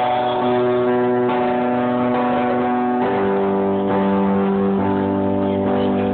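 Live music without vocals: held keyboard chords, steady between changes, with the chord changing about three seconds in and again shortly before five seconds, heard through a phone recording from the audience.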